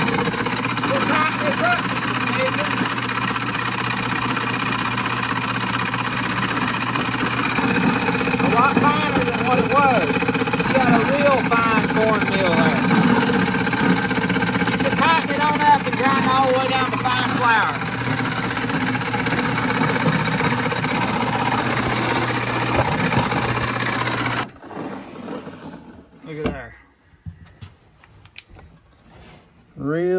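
A small 1959 Meadows Mill 8-inch stone gristmill running and grinding shelled corn into grits and fine cornmeal. It makes a steady mechanical running noise with a constant low hum, which cuts off suddenly near the end.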